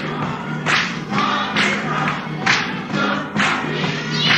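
Gospel song with a choir singing over a steady beat.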